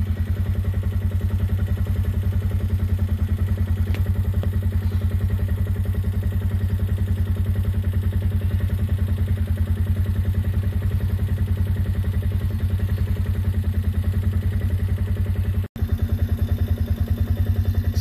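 Small vehicle engine running steadily at low speed with an even, pulsing low note. The sound cuts out for an instant near the end.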